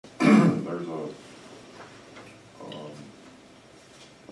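A man's voice: a loud, short vocal sound in the first second, then a brief quieter utterance near the middle.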